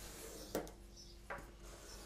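A pen drawing a line along a metal ruler on card, with two light taps about three-quarters of a second apart.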